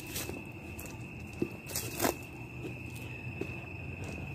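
Footsteps and a few light knocks and scuffs from a camera being carried over ground at night, the sharpest about two seconds in. Under them runs a steady high-pitched insect trill.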